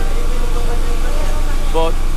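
Engine of a floating restaurant boat running with a steady low drone.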